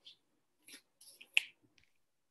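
Faint handling noises as a book is picked up from a desk: a few soft clicks and rustles, with one sharper click a little past the middle.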